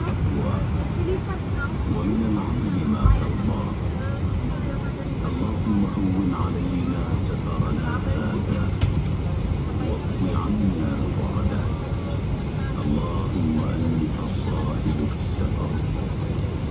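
Steady low cabin rumble of a Boeing 777-300ER taxiing, with indistinct passenger voices throughout. A single dull thump about three seconds in.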